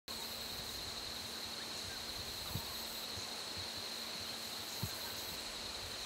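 Steady insect chorus in the bush: a constant high-pitched drone over a soft background hiss, with two faint low knocks about two and a half and five seconds in.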